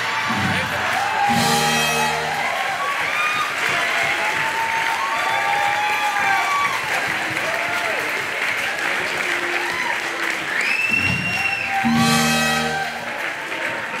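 Audience applauding and cheering with scattered whoops, over music. Two short sustained musical chords sound, one about a second in and one near the end.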